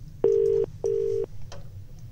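Telephone ringback tone heard down the phone line: one 'ring-ring' double burst, two short steady low beeps about 0.4 s each with a brief gap. It is the Indian ringing pattern, meaning the called phone is ringing.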